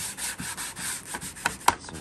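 Abrasive scuff pad wet with isopropyl alcohol scrubbing a plastic slot car track section in rapid strokes, scuffing the surface before painting. Two sharp clicks come a little before the end.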